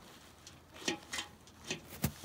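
A few light clicks and knocks from a galvanized metal sap bucket as it is lifted off the hook on a maple tap spile.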